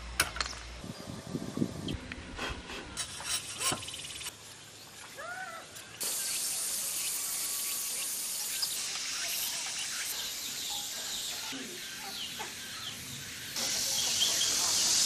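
A sickle blade cutting green plant stems, a series of short sharp clicks in the first few seconds. Then a steady outdoor hiss with a few faint bird chirps.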